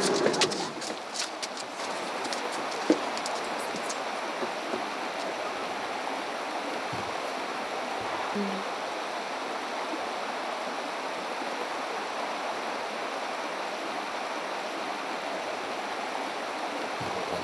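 Steady rushing of a stream, with a few clicks and knocks in the first couple of seconds.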